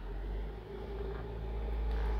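2023 Jeep Wrangler's 2.0-liter turbocharged four-cylinder engine starting at the push of the button and running with a low rumble that grows slightly louder toward the end. It starts right up, as a brand-new engine should.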